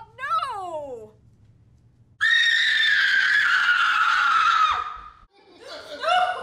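A person screaming: one long, high-pitched scream of about two and a half seconds that slides slowly down in pitch and breaks off, preceded by a short cry that rises and falls.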